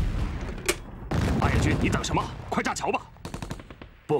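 Gunfire on a war film's soundtrack: single shots and machine-gun fire, with one sharp shot about a second in and a fast run of shots near three seconds.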